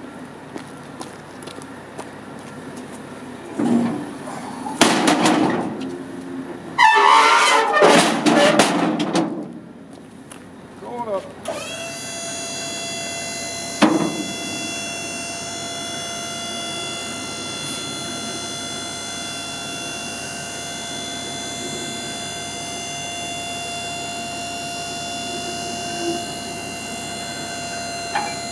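Waltco tuck-under liftgate on a trailer being folded and stowed. There are loud, irregular metal clatters for several seconds as the platform folds. Then the hydraulic pump motor runs with a steady high whine as the gate tucks up, with a single clunk a couple of seconds into the run.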